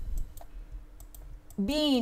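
Several light, sharp clicks spread over a second and a half from the pointing device writing annotations on the screen, then a woman's voice says one syllable near the end.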